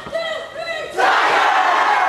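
High school band members in a huddle shouting a group cheer. A few voices call out, then about a second in the whole group breaks into one loud shout together.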